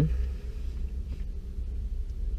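Low, steady rumble inside a parked car's cabin.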